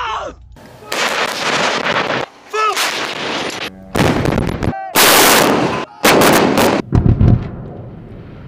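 A battery of towed howitzers firing, about six loud gun blasts one after another over several seconds.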